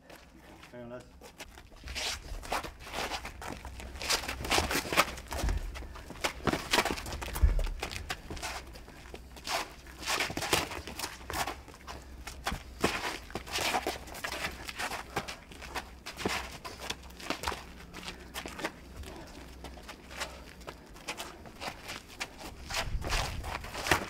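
Bare-knuckle boxers trading punches with taped hands: an irregular run of sharp slaps and knocks of fists on skin and shuffling feet, with two heavier low thumps about five and seven and a half seconds in.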